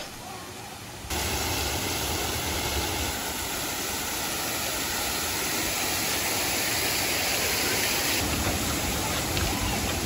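Steady rushing of river water that starts abruptly about a second in, after a quieter moment.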